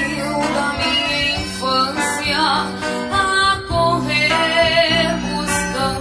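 A young girl singing a slow milonga in Portuguese, her held notes wavering with vibrato, over acoustic guitar accompaniment.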